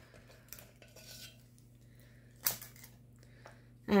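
Small metal scoop working brownie batter: faint scrapes and light clicks as it scoops from a glass bowl, then one sharp metallic clink about two and a half seconds in as it goes to the metal mini muffin pan.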